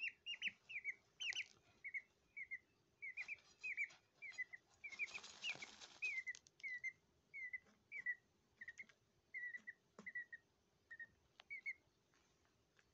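Peafowl chick peeping: a steady series of short, high chirps that slow toward the end. About five seconds in there is a short burst of scratchy rustling as the chick shuffles and flicks soil in its dust bath.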